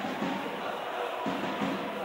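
Spectators' crowd in an indoor sports hall chanting and singing, a steady din with faint sung tones rising out of it.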